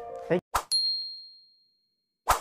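A sharp click followed by a single bright, high-pitched ding that rings and fades away over about a second: the sound effect of an animated 'like' button being pressed.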